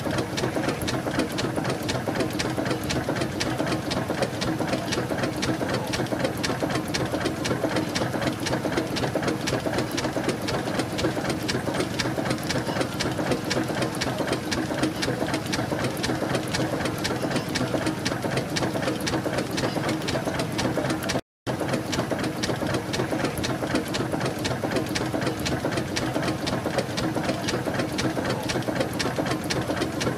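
Burrell Gold Medal steam tractor running, its motion work and valve gear giving a fast, even mechanical clatter. The sound breaks off for a moment about two-thirds through.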